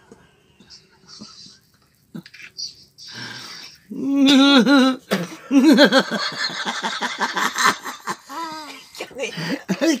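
A woman laughing hard: quiet at first, then from about four seconds in loud bursts of pitched laughter that turn breathless, as if she can't get her breath.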